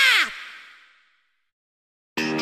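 The last note of an outro jingle: a long wavering tone that dips and then falls away about a quarter second in, its echo fading out within the first second, followed by silence.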